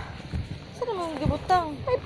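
Indistinct voices talking, with pitch sliding up and down and no clear words.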